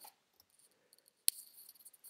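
A single sharp click a little over a second in, followed by a brief, faint high rattle.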